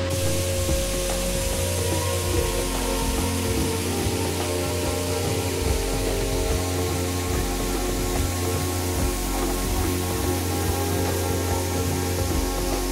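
Background music with steady tones and shifting bass notes over a steady rushing hiss of falling water from a waterfall, which comes in abruptly at the start.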